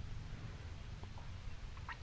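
A pause in a recorded talk: a low steady hum and faint hiss of the room and recording, with a few faint ticks.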